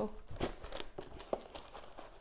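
Crinkling and rustling of a clear plastic bag around a folded canvas as hands handle it in its cardboard box, with a few small ticks.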